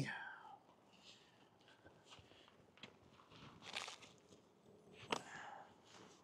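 Faint scuffing and handling noises close to the microphone, with one sharper click about five seconds in; otherwise near quiet.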